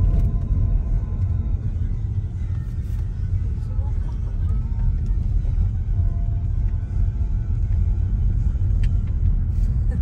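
Steady low rumble of an Audi car heard from inside the cabin while it is being driven: engine and tyre road noise.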